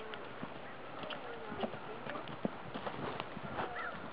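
Hoofbeats of a horse cantering on a sand arena: irregular dull thuds.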